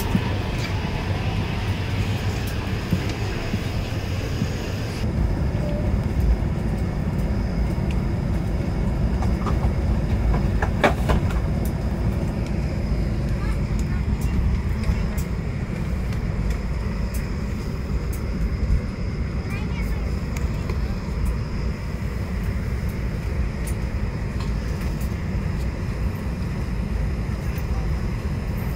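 Steady low rumble of cabin noise aboard an Airbus A220-300 parked at the gate during boarding, with passengers' voices in the background.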